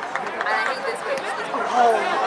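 Indistinct chatter of sideline spectators, several voices overlapping with no clear words.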